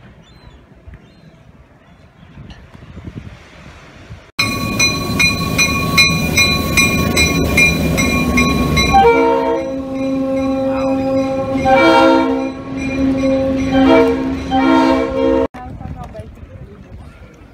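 Diesel locomotive passing close: first a loud rumble of the train going by, then from about nine seconds in its air horn sounds a long chord with a few short breaks, cut off abruptly near the end. Before the train, about four seconds of faint shore ambience.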